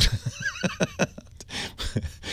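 Laughter: a string of short breathy bursts.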